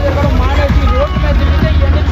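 A man speaking in Telugu over a steady low rumble.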